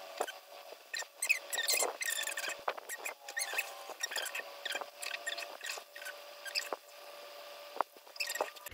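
Quick high squeaks and scrapes of a wooden stir stick working white epoxy resin in a plastic mixing cup. A faint steady hum from the electric cup turner's motor runs underneath.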